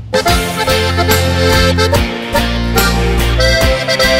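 Instrumental intro of an Alpine folk-pop song: a diatonic button accordion plays the melody over held bass notes and a steady drum beat.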